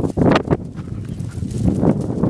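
Running footfalls and paws on dry grass: a quick, uneven thudding and rustle, with a couple of sharper thumps about the first half-second.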